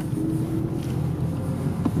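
BMW M4's twin-turbo straight-six heard from inside the cabin under full throttle, with its power capped at 20% by an app-controlled accelerator-pedal box, so it pulls at a steady, unchanging pitch instead of revving out.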